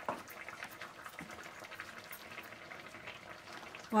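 Thick carrot-and-beetroot halwa with milk and mawa bubbling faintly in a pan over medium heat as its last moisture cooks off, with small pops and a wooden spatula stirring through it.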